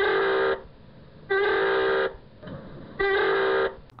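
Submarine surfacing alarm: three blasts of a klaxon-type horn, each lasting about two-thirds of a second, with a short upward bend in pitch at the start of each. The sound is band-limited.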